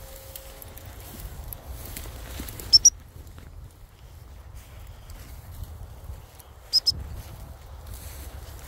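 Gundog whistle blown in two short, high pips, twice, about four seconds apart: the double-pip signal to a hunting spaniel. Under it, low rustling of movement through rough grass and wind rumble on the microphone.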